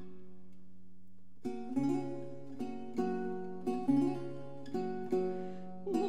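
Historical guitar playing alone between sung phrases. A held chord dies away, then from about a second and a half in it plucks chords roughly once a second.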